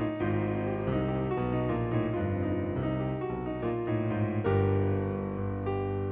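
Casio Privia digital piano playing a song: a melody over held chords, the notes changing every half second or so.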